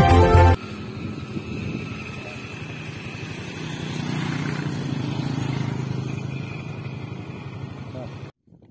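Loud intro theme music cuts off half a second in, giving way to a motorcycle engine running as it passes close by, growing louder around the middle and then fading.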